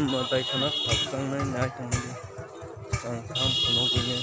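A shrill, steady high tone sounds twice, each time for about a second, over people's voices.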